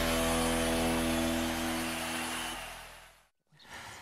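The held final chord of a TV sports programme's theme music, ringing out and fading away over about three seconds, followed by a brief silence.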